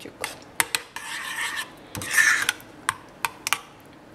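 A metal spoon stirring thick mayonnaise sauce in a glass bowl: two scraping strokes against the bowl, the second the louder, with several light clinks of the spoon on the glass.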